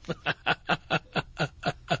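A person laughing in a quick, even run of short 'ha' sounds, about five a second.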